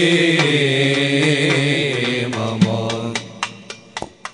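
Male voices chanting a nasheed, holding a long, gently wavering closing phrase that fades out over the second half. A few sharp percussive strikes sound as it fades.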